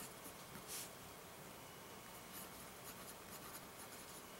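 Faint scratching of a Jinhao 9019 fountain pen's nib writing cursive on Rhodia pad paper, with a slightly louder stroke a little under a second in. The pen is not a wet writer and tends to skip on this slick paper.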